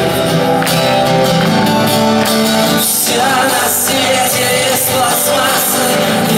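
Live rock song: a male voice singing, with held notes, over a strummed acoustic guitar.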